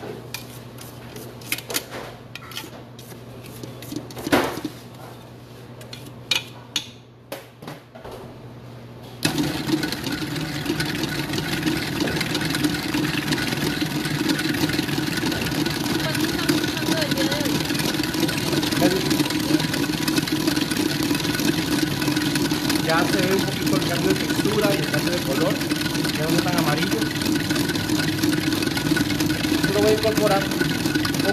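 Electric stand mixer switched on about nine seconds in and running steadily, creaming cake batter. Before it starts there are a few light knocks and clicks of the bowl being scraped down.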